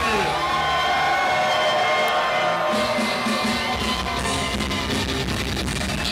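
Live music over a club sound system: a bass-heavy beat with drums, played on stage.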